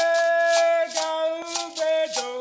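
A Gahu song opening with a singer holding one long note, while a gourd rattle (axatse) is shaken in steady strokes. Near the end the voice moves to a new note.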